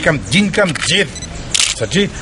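A man speaking, with a short burst of camera shutter clicks a little past halfway.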